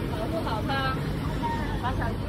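City street ambience: a steady low rumble of traffic, with brief snatches of people talking about half a second in and again near the end.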